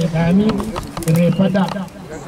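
A man's voice chanting in long held, slowly wavering low notes, two phrases with a short break about a second in.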